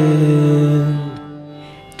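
A male singer holds the steady closing note of a Bengali kirtan (devotional song) with instrumental accompaniment. The note stops a little over a second in and dies away.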